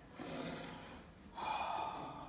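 A person breathing audibly twice, the second breath louder, near the end.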